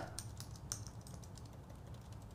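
Faint typing on a computer keyboard: a handful of quick keystrokes, most of them in the first second.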